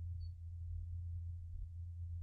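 Steady low hum with a faint, thin steady tone above it: the background noise of an old tape recording, with no speech.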